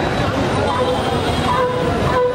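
Loud, steady rumbling noise like passing traffic, with a held horn-like note that comes in just under a second in and carries on.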